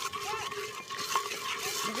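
Food frying in a steel pot over a wood fire: a steady hiss, with one light click about a second in.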